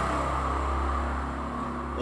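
A steady low background hum with a constant noise floor and no voice.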